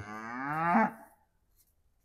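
Beef cow mooing once: a single call of about a second that grows louder and rises in pitch before it breaks off.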